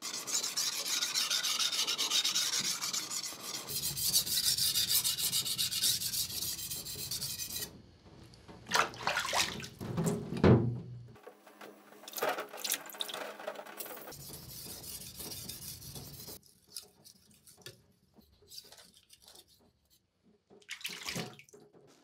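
Steel kitchen-knife blade being sharpened by hand on a wet 400-grit whetstone: repeated rasping strokes of steel on stone. The strokes pause in the middle for a few short splashy sounds, then resume more quietly before dying away.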